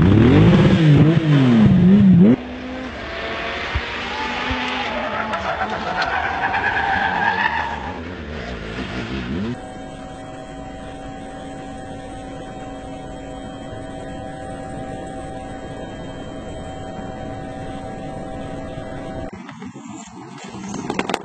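Rally car engines at speed across several cuts: a loud, wavering engine note at the start, then an engine climbing steadily in pitch as it accelerates, then a quieter, steady engine drone through the second half.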